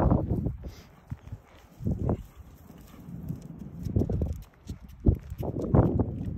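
Walking noises on a concrete sidewalk: irregular soft thuds and rustles, roughly one every second or two.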